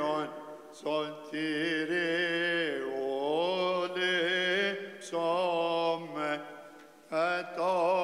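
A man chanting an Orthodox liturgical hymn unaccompanied, in long, ornamented phrases that bend in pitch, with brief breaks between phrases.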